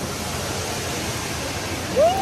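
Steady wash of rushing and splashing water in an indoor water park pool hall.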